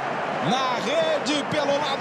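A male TV football commentator speaking over steady stadium crowd noise.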